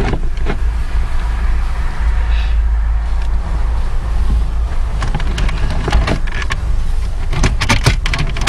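Clicks, knocks and scrapes of a car radio head unit being slid into the dashboard over its wiring, with the plastic trim bezel being handled near the end, over a steady low rumble.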